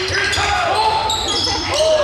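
Basketball dribbled on a hardwood gym floor, with sneakers squeaking as players cut and stop, in a large echoing gym.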